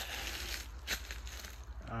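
Faint crunching with about three sharp clicks, over a steady low rumble.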